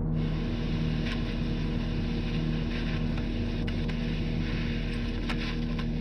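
Low, steady droning film score: sustained deep tones over a constant hum, with a few faint scrapes.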